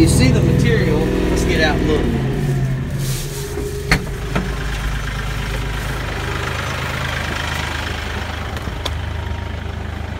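Kioti 5310 compact tractor's diesel engine running, then dropping to a steady idle about two seconds in, with a sharp click about four seconds in.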